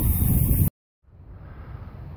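Wind buffeting the microphone, with a steady high hiss over it, cut off abruptly less than a second in. After a moment of dead silence, a much quieter steady outdoor rush follows.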